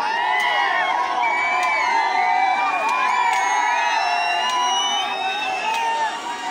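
A large crowd shouting and cheering with many overlapping voices, some rising to high whoops. A few sharp cracks sound through it.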